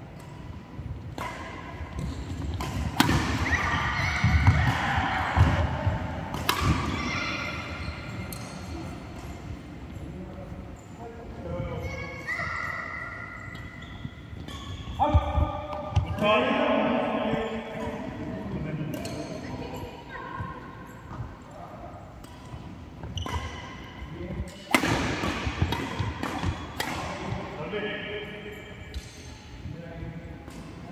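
Badminton doubles play: sharp racket strikes on the shuttlecock and footfalls on the court mat, with players' voices at several points.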